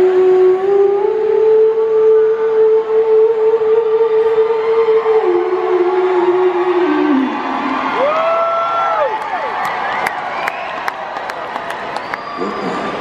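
Concert crowd cheering as a song ends. A long held note dies away over the first seven seconds, and whoops rise and fall about eight seconds in.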